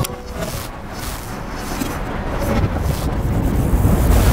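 A dark, rumbling noise swell in the soundtrack that takes the place of the gentle music and grows steadily louder, with a deep low rumble building toward the end.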